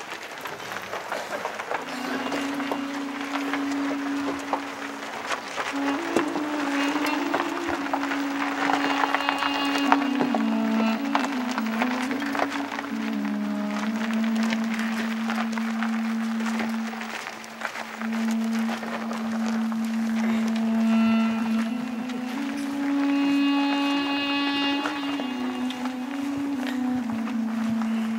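A duduk plays a slow, mournful melody of long held notes in a low register, stepping gently up and down. Crowd noise with scattered clicks runs underneath through the first half.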